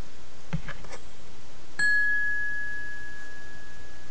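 A struck chime rings once about two seconds in: one clear high tone with a few fainter higher overtones, fading slowly. A faint knock comes just before.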